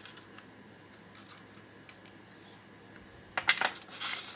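Light clicks and rattles from an RCBS hand priming tool and its plastic primer tray, with small rifle primers inside, being handled. A few faint ticks are followed by a quick run of sharper clicks about three and a half seconds in.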